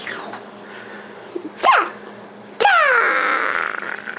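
A young child's playful wordless vocal noises: a short squeal about one and a half seconds in, then a louder, long call that slides down in pitch.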